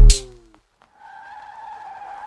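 The last hit of the intro music dies away with a downward pitch slide, and after a short gap a steady tire-squeal screech sets in about halfway through and holds.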